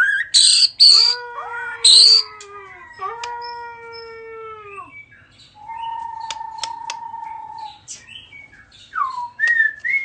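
A shama singing loudly. It opens with harsh high notes, then gives long whistled notes that slide downward and a steady held whistle, with scattered clicks. Near the end comes a whistle that rises and falls.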